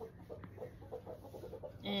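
Chickens clucking faintly in the background, a run of short repeated clucks.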